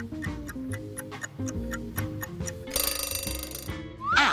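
Quiz countdown-timer sound effect: a clock ticking about four times a second over a short music loop, ending with an alarm bell ringing for about a second near the end, signalling that time is up.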